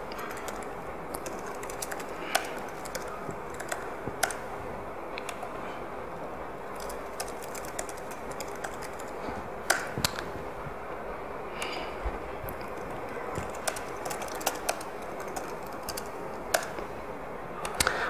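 Laptop keyboard being typed on: scattered, irregular keystroke clicks over a steady room hiss.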